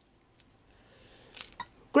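Quiet handling of a glass-pearl bracelet in the hands: a few faint clicks, and one brief soft rustle about one and a half seconds in.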